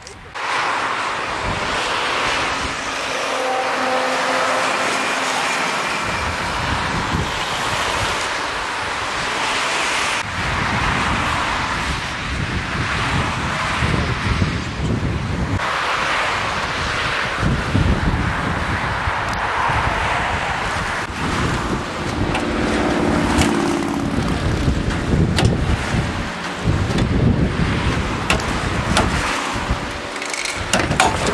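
Cars passing on the road, their noise swelling and fading, with wind gusting on the microphone for most of the stretch.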